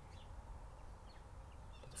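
Faint outdoor background noise: a low, steady rumble with a light hiss, before speech resumes at the very end.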